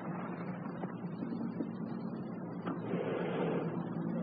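Steady hiss of an old radio broadcast recording in a pause between lines, with a faint low hum and no distinct sound events.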